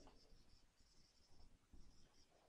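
Faint squeak of a marker drawing on a whiteboard, in several short strokes.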